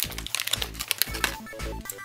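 Crinkling of a plastic blind-bag wrapper being handled, with many small clicks, over soft background music.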